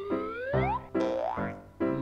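Playful cartoon background music, with two rising sliding glides over it: a long one through the first second and a shorter one about a second in.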